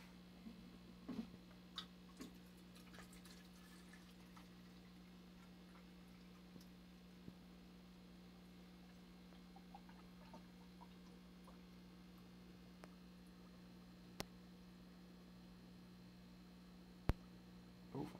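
Near silence over a faint steady hum, with faint drips and ticks of water poured into the electrolysis cell's reservoir in the first few seconds. A few sharp clicks come near the end.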